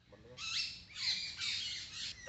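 Birds calling: a few short, high squawks and chirps, loudest around half a second and a second in.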